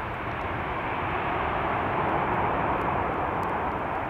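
Boeing 737-300's CFM56 jet engines heard across the airfield during the landing roll: a steady rushing jet noise that swells a little about halfway through.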